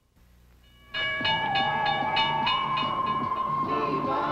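Train sound effect in a commercial soundtrack: after about a second of near silence it starts suddenly, with a steady whistle chord over a rhythmic clickety-clack of about four beats a second.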